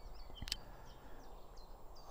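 Faint birdsong from small birds in the background, a scatter of short high chirps, with a single click about half a second in.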